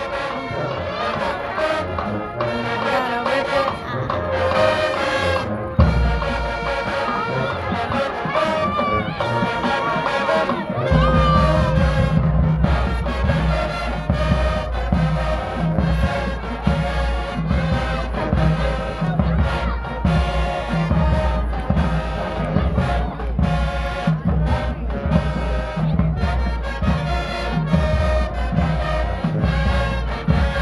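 High school marching band playing a tune with brass and drums. A heavier low drum beat comes in about eleven seconds in and keeps a steady rhythm.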